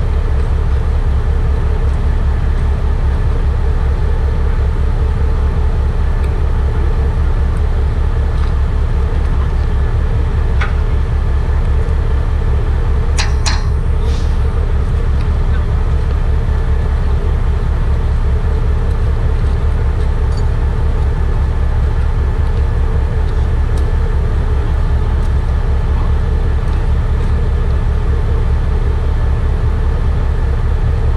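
Heavy truck engine idling steadily close by, a loud, even low drone with a fast regular pulse. A few sharp clicks come about halfway through.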